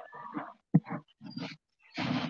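A quick run of short animal calls, like a dog's, with a sharp, loud one a little before the middle.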